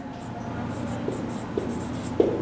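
A marker pen writing a word on a whiteboard: a string of short, high strokes over a low steady hum.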